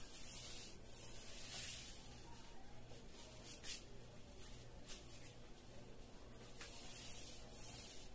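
Faint swishing of a flat paintbrush's bristles dragged across a drywall board, applying paint in repeated strokes.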